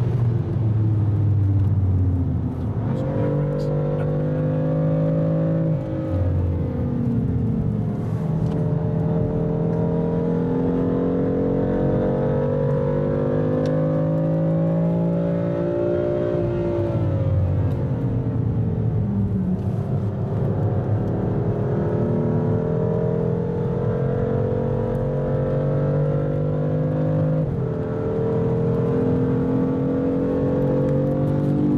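BMW engine heard from inside the cabin on a fast lap of a race circuit. It revs up steadily under hard acceleration, jumps in pitch at gear changes about three seconds in and again near the end, and falls away under braking in between.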